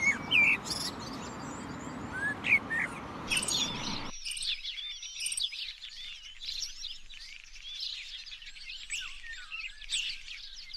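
A male common blackbird singing loud whistled phrases over steady background noise. About four seconds in, the sound cuts abruptly to a dense chorus of many small birds chirping and twittering.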